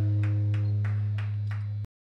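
A low amplified guitar note ringing out steadily after the song's last chord, fading slightly, with scattered sharp hand claps over it; the sound cuts off abruptly near the end.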